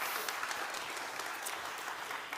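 Congregation applauding steadily, a thank-you round of clapping from a seated audience.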